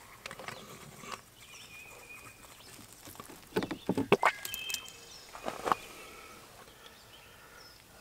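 Sparse handling noises from priming a fertilizer injector's clear plastic suction tube and setting it into a plastic jug: a cluster of clicks and knocks about three and a half to four seconds in, and another pair about five and a half seconds in.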